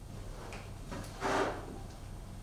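Marker writing on a whiteboard: a few short scraping strokes, the longest and loudest a little past a second in.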